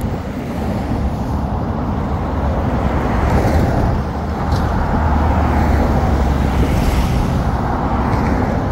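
Interstate traffic passing close by at highway speed: a continuous rush of tyre and engine noise with a heavy low rumble, growing louder in the second half as vehicles come by in the near lane.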